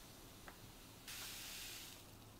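Powdered milk pouring from a paper bag into a glass jar: a faint hiss lasting under a second, about a second in, after a soft tick.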